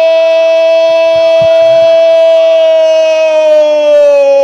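A sports commentator's long, drawn-out "Gol!" shout in Brazilian Portuguese, held on one pitch as a goal is scored and sagging slightly near the end.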